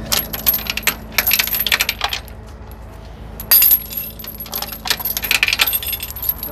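Steel tow chain being handled, its links clinking and rattling in irregular bursts, with one louder clank about three and a half seconds in. A steady low hum runs underneath.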